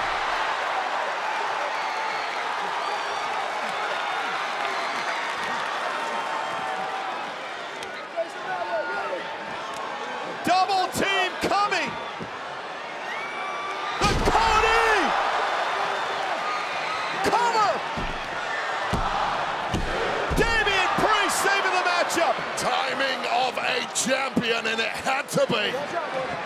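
Bodies slamming onto a wrestling ring's canvas with heavy thuds, the loudest about 14 seconds in and a cluster around 18 to 20 seconds, over steady arena crowd noise with shouts and cheers.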